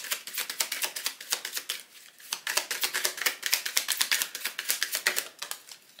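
A deck of Lenormand cards being shuffled by hand: a rapid run of crisp card clicks, about eight a second, with a brief pause about two seconds in.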